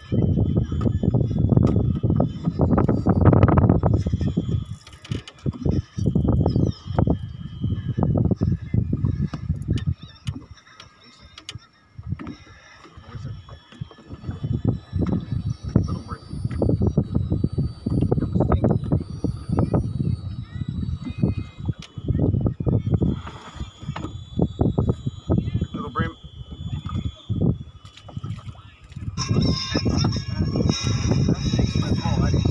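Wind buffeting the microphone in uneven low rumbles that rise and fall, easing for a few seconds near the middle.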